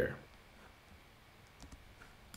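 A few faint clicks of a computer keyboard as code is typed, coming about a second and a half in.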